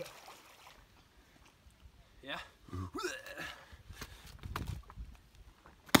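A person hitting the water feet-first after a high cliff jump: one sudden sharp slap of water entry just before the end, loud against an otherwise quiet stretch.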